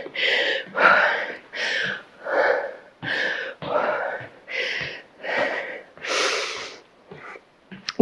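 A woman breathing hard and fast after jumping exercise: about ten loud, breathy in-and-out breaths, a little over one a second, with a longer, louder exhale about six seconds in as she catches her breath.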